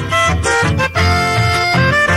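Instrumental passage of a Paraguayan polca, the accordion holding the melody in long notes over a steady bass and rhythm pulse about twice a second.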